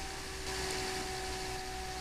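Bedini motor running steadily: a constant hum with a faint steady whine.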